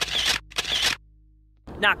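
Two camera shutter sound effects in quick succession, each a short snap of about half a second.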